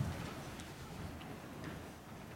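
Quiet room tone with a few faint, scattered clicks and ticks.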